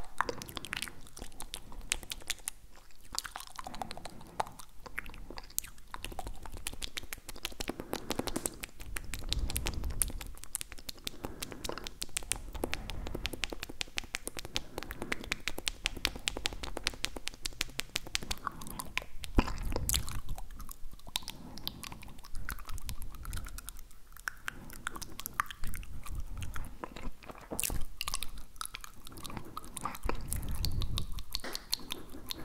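Tongue and mouth sounds made right at the microphone: a continuous run of rapid, wet tongue clicks and smacks, with a few heavier, deeper passages.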